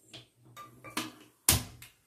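An aluminium pressure cooker is handled and set down on a glass-top cooktop. A few light knocks come first, then one sharp clank about one and a half seconds in that rings briefly.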